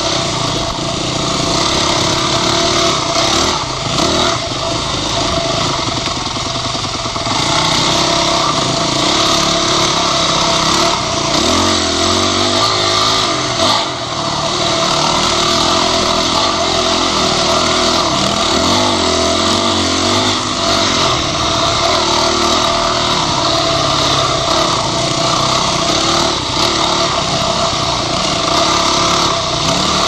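Dirt bike engine running continuously along a trail, its revs rising and falling with the throttle.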